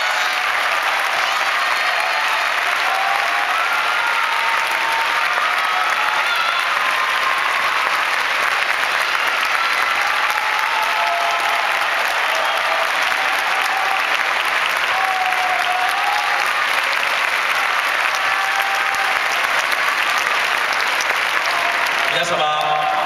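Large seated audience applauding steadily throughout, with a few faint voices in the crowd.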